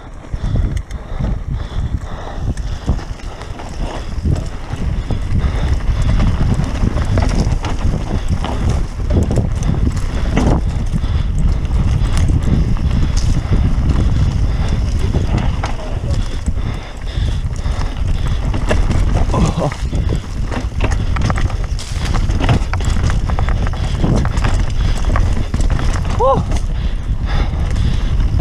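Mountain bike ridden fast down loose dirt singletrack: a constant low rumble of tyres and wind on the microphone, with irregular rattles and knocks as the bike jolts over the rough trail.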